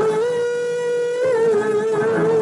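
A woman singing a worship song solo, holding one long note that breaks into vibrato a little over a second in.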